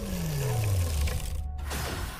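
Cartoon sound effect of an unplugged life-support bellows machine powering down: a tone that slides steadily down in pitch over about a second, then settles into a low drone.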